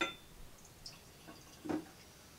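A light glass clink, then faint small drips and ticks as bourbon is poured from its bottle into a tulip-shaped tasting glass, with a soft thump near the end.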